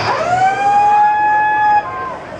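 One long horn-like tone, loud and steady. It slides up in pitch at the start, is held for nearly two seconds, and cuts off suddenly.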